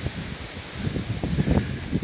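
Wind rumbling on a mobile phone's microphone in uneven low buffets, outdoors among trees and undergrowth.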